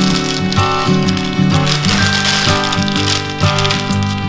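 Baking paper crinkling and rustling as the top sheet is peeled back off a rolled-out sheet of dough, over acoustic guitar music.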